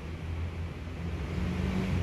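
Low, steady rumble of a motor vehicle engine, growing slightly louder near the end.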